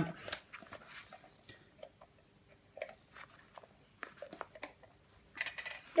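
Scattered light clicks and small knocks from the tin parts of a Hoover moth-killing attachment being handled, with quiet stretches between and a few louder clicks near the end.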